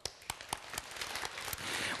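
Studio audience of children applauding: a dense patter of hand claps that grows slowly louder.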